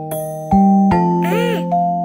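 Music-box tune of bell-like struck notes over a held low note, a new note about every half second, with a short swooping rise-and-fall effect about halfway through.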